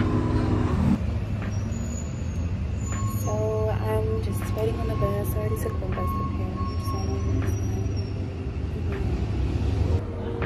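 Street traffic noise with a steady low engine rumble from a large road vehicle. A voice is heard briefly in the middle, and a thin steady whine runs for a few seconds.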